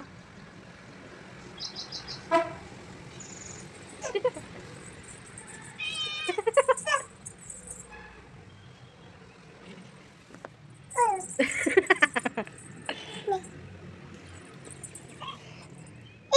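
A domestic cat meowing on and off in short calls, loudest in a cluster about six to seven seconds in and again about eleven to twelve seconds in.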